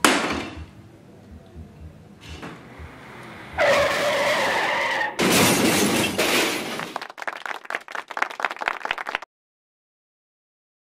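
A sharp hit, then about three and a half seconds in a screeching skid of about a second and a half. It is followed by a loud crash and a rapid clatter of falling debris that cuts off suddenly about nine seconds in, like a car-crash sound effect.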